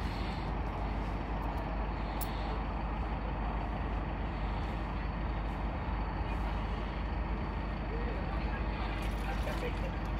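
A large vehicle's engine idling steadily, a constant low rumble.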